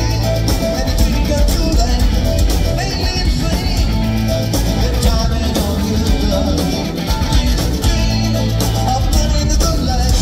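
Live rock band playing a pop-rock song, with a male lead vocal over electric guitar, bass and drums, heard from the audience in a theatre. The band plays on steadily, easing off briefly about seven seconds in.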